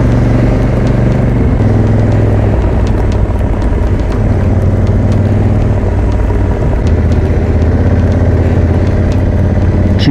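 Honda Africa Twin's parallel-twin engine running at a steady road speed under wind and road noise, its note shifting slightly about one and a half seconds in and again about seven seconds in.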